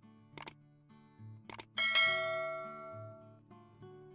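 Subscribe-button sound effect: two quick double clicks, then just under two seconds in a bright bell ding that rings out and fades over about a second and a half. Soft background guitar music plays underneath.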